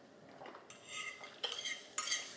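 A metal fork scraping and clicking against a ceramic dinner plate: a few short, faint scrapes starting a little under a second in.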